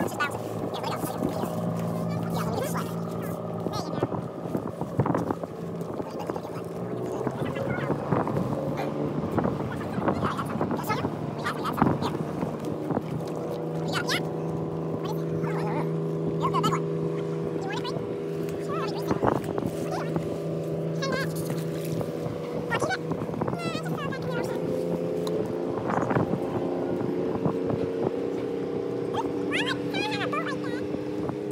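Motorboat engine running steadily, its pitch shifting a few times, with scattered knocks.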